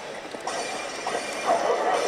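Racing sound effects from an Initial D pachislot machine, cars running with short squeals during its racing battle, over the steady din of a slot parlour.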